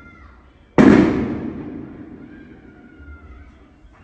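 One sudden loud bang a little under a second in, trailing off in a long rumbling tail that fades over the next few seconds.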